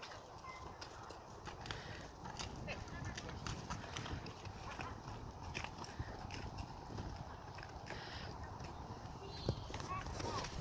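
Hoofbeats of a horse moving on the sand footing of a dressage arena, a run of short irregular thuds and clicks.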